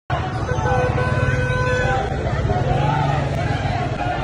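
Street crowd noise among traffic: voices and calls over a steady low rumble, with a car horn held for about a second and a half near the start.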